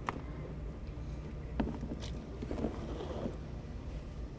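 Wind rumbling on the microphone, with a few light clicks as metal tongs drop sweetgum balls into a plastic container, and faint children's voices in the background.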